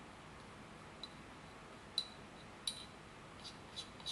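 About five light, sharp clinks of a ceramic mortar tapped against the rim of a small glass beaker, knocking the ground powder out into the water. The loudest comes about halfway through.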